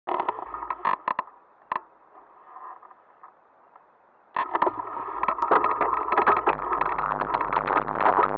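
Mountain bike descending a rough, stony dirt trail, heard through its onboard camera: the mount and bike rattle and knock over the stones. The clatter drops away for a couple of seconds, then comes back suddenly and densely a little over four seconds in.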